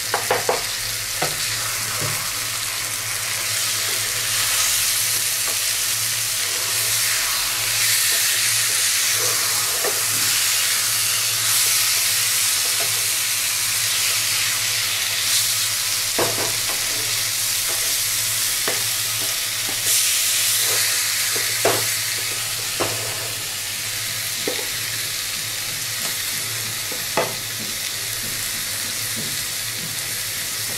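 Fish pieces in onion masala sizzling in a wok while a spatula stirs through them, with sharp knocks now and then as the spatula strikes the pan.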